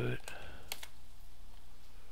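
A few computer keyboard keystrokes, the sharpest two close together just under a second in, over a faint steady hum.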